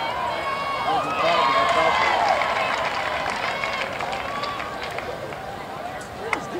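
Several voices shouting and calling at once, overlapping, loudest in the first two seconds and tapering off toward the end.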